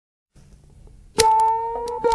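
A song's instrumental intro starts suddenly about a second in, with ringing guitar notes stepping between pitches, after a moment of faint low noise.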